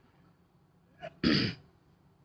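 A man clearing his throat once: one short, sharp burst a little past a second in.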